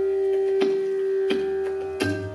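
Bansuri (long bamboo flute) holding one long steady note in Raga Bihag, with two sharp percussion strokes, about half a second and a second and a quarter in.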